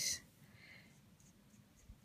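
Faint, soft scratching of a water brush's tip on paper as it dabs on a paper towel and works over watercolour paper, lifting colour.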